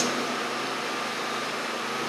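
Steady background hiss with no distinct event, in a pause between spoken sentences.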